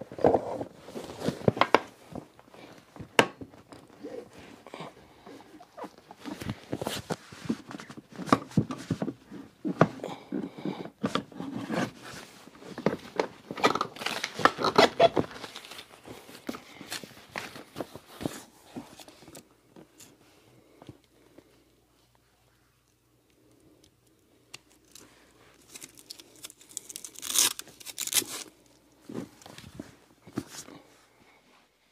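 Handling noise from assembling a leather-upholstered power-reclining theater seat: clicks, knocks and rustling as the backrest is fitted onto its side rails. A short lull follows, then a loud tearing sound near the end.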